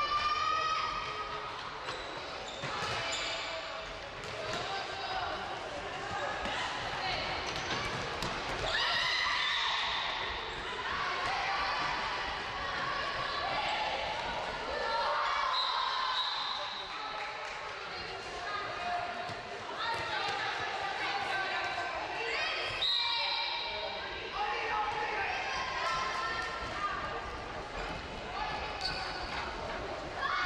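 A handball bouncing on a wooden sports-hall floor, amid many high-pitched shouts and calls from the girls' teams, all echoing in a large hall.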